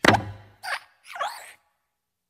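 Animated Pixar desk-lamp (Luxo Jr.) sound effects: a loud thump as the lamp stomps down on the letter I, followed by two short squeaky, springy creaks from the lamp's joints as it moves.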